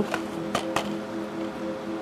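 A few sharp clicks and crackles from a shrink-wrapped plastic Blu-ray case as it is turned over in the hand, over a steady low hum of held tones.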